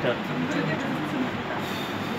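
Steady background noise with faint voices murmuring underneath, and a brief hiss near the end.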